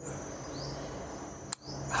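Steady high-pitched insect drone with a bird giving a short rising chirp twice, and a single sharp click about one and a half seconds in.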